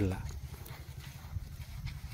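Low, uneven rumble of wind on the microphone, with a couple of faint ticks.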